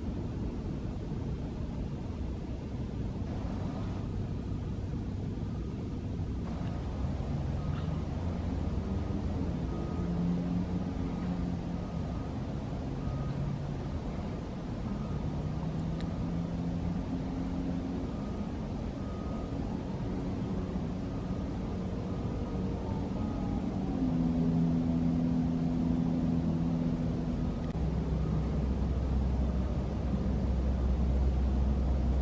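Distant motor-vehicle engine drone, a steady low rumble and hum whose pitch shifts in steps and grows louder about two-thirds of the way in, with a faint high beep repeating about once a second through the middle.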